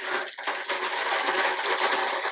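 A hand rummaging in a fabric-lined wire basket: the cloth liner rustles and small items inside shuffle against each other in a steady, rapid rustle.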